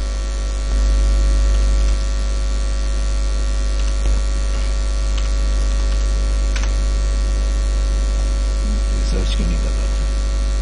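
Steady, loud electrical mains hum in the recording, a low buzz with hiss over it, with a few faint clicks.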